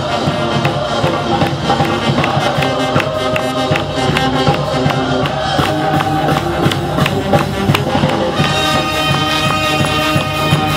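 A street brass band of saxophones, trumpets and sousaphones playing a tune live, with steady percussion strokes under the horns. About eight and a half seconds in, brighter high horn notes come in.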